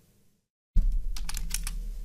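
After a moment of dead silence, a quick run of key taps on a computer keyboard, typing in a ticker symbol, over a low hum.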